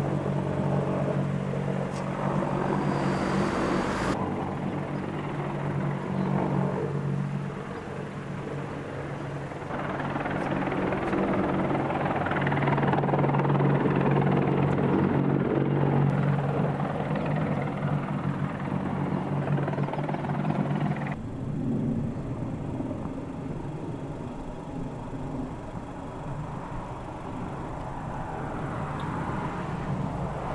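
AH-64 Apache attack helicopter flying past: a steady low rotor drone with engine noise over it. The sound changes abruptly a few times, about 4, 10 and 21 seconds in.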